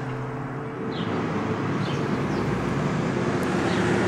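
Road traffic noise: a steady rumble and hiss that grows gradually louder over the few seconds, as of a vehicle approaching.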